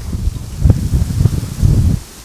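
Wind buffeting the microphone outdoors: a loud, uneven low rumble that rises and falls in gusts.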